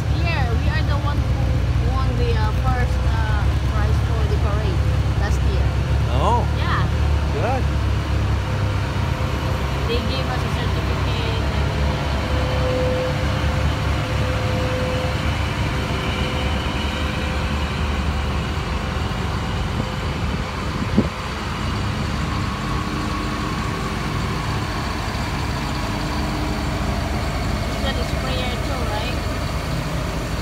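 Side-by-side UTV engines running as the vehicles drive slowly past: a steady low rumble, heaviest in the first ten seconds, with faint voices in the background and one sharp knock about two-thirds of the way through.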